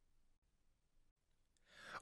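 Near silence, then a soft in-breath from the narrator near the end.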